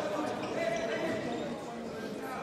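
Handball game sounds echoing in a sports hall: the ball bouncing on the court floor, with voices in the background.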